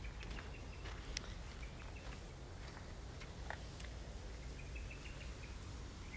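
Faint bird chirps, short high notes coming in quick little runs, the longest near the end, over a steady low rumble of outdoor background noise.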